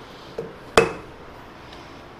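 Dead blow hammer tapping a steel bar held in a lathe's four-jaw chuck to knock it toward true against a dial indicator: a light knock, then a sharper blow with a short metallic ring.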